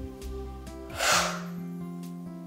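A single forceful exhaled breath about a second in, lasting under half a second, as a woman twists through a Pilates crisscross. Steady background music runs underneath.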